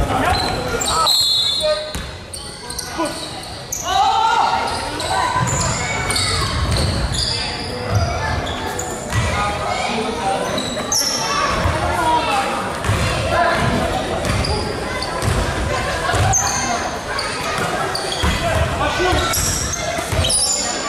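Basketball game sounds echoing in a gym: the ball bouncing on the floor in repeated thuds, short high sneaker squeaks, and players' voices calling out.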